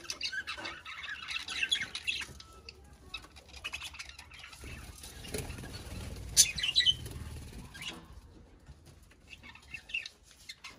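Budgerigars chirping in short, scattered calls, with a stretch of low rustling noise about five seconds in; it goes quieter over the last two seconds.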